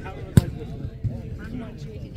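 A volleyball struck by a player's hands or arms, one sharp smack a little under half a second in, with a softer knock about a second in. Voices in the background.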